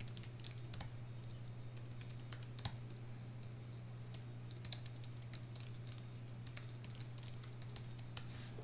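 Computer keyboard typing: faint key clicks in irregular runs as words are typed, over a steady low hum.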